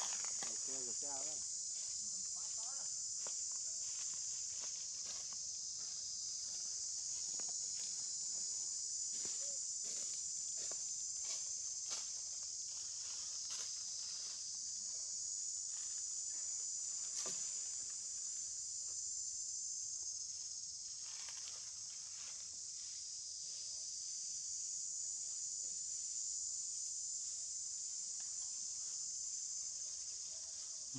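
A steady, high-pitched drone of insects in the trees, with scattered light clicks and rustles.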